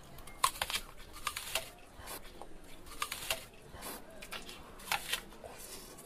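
A person chewing crunchy food close to the microphone: a string of irregular sharp crunches, some in quick pairs, spread over several seconds.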